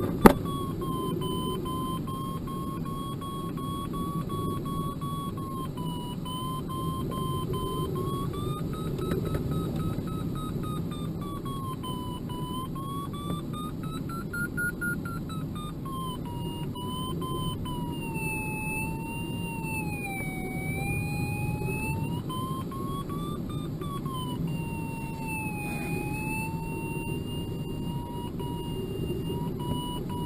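Audio variometer in an ASW-27B sailplane cockpit: a continuous tone drifting slowly up and down in pitch as the climb and sink rate changes, over steady airflow rush. There is a sharp click right at the start.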